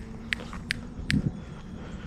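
Footsteps on dry, patchy grass and dirt, with a few short sharp clicks in between.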